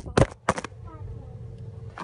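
A phone and its cardboard toilet-roll holder toppling over onto a hard surface: a loud knock at the start, then a few quick clattering knocks within the first second, followed by a faint steady hum.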